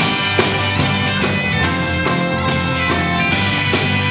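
Breton folk-rock band playing an instrumental passage: a bombarde carries the reedy melody over electric bass guitar and a drum beat.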